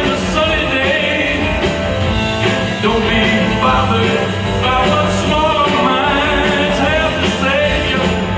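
Live rock band playing a 1960s garage-rock song: electric guitars, bass and drums with singing, amplified through a theatre PA.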